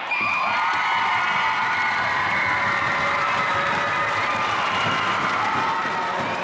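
Crowd cheering and screaming in many high voices, with some applause, at the end of a cheerleading routine; the cheering holds steady throughout.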